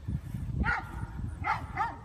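A dog barking off camera: three short, high-pitched barks, one about two-thirds of a second in and two close together near the end.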